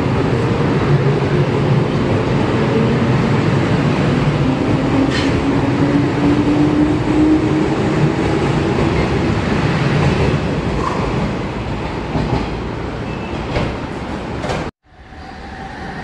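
A JR East 185 series electric train running past the platform, with a loud rumble of wheels on rail and a motor whine that rises slowly in pitch as it gathers speed on departure. Near the end the sound cuts off suddenly and another train's running noise fades in.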